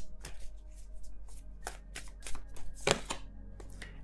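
A tarot deck being shuffled by hand: a quick, irregular run of card snaps and slaps, the loudest a little before the end, as the reader works the deck before drawing a card.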